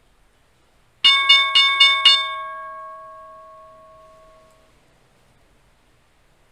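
A bell struck five times in quick succession, about four strikes a second, then ringing out and fading over a couple of seconds: a bell sounding the stock market's opening.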